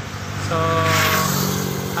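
Yamaha NMAX scooter's single-cylinder engine idling, with a steady, evenly pulsing putter.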